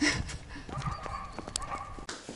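Footsteps on paving stones, a run of irregular short knocks, with a faint thin steady tone in the background from about a third of the way in.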